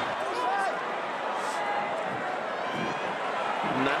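Stadium crowd noise: a steady hubbub of many voices, with a few faint distant shouts standing out from it.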